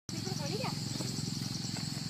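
Insects chirping in a steady, high, pulsing drone over a low hum, with a short voice exclamation about half a second in.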